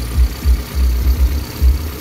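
Toyota 4E-series 1.3-litre four-cylinder engine idling, heard close up as a low, uneven rumble.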